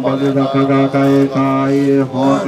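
Tibetan Buddhist monks chanting a mantra, male voices reciting on one steady low note with short breaks between the repeated syllables.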